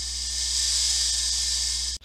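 A hissing magic-energy sound effect for a swirling spell, swelling slightly in the middle and cutting off abruptly at the end, over a low steady drone.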